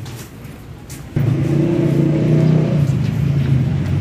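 A motor vehicle's engine running steadily, cutting in suddenly about a second in and staying loud after that.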